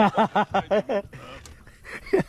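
A man laughing in a quick run of short, evenly spaced bursts that dies away about a second in.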